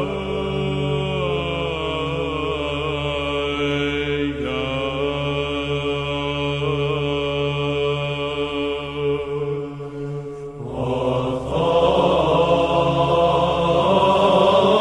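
Byzantine Orthodox chant: a male choir sings a slow melody over a steady held low drone (ison). There is a brief break about ten and a half seconds in, then the next phrase comes in louder.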